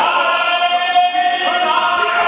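A group of men chanting together in unison, holding one long note that steps up in pitch about a second and a half in.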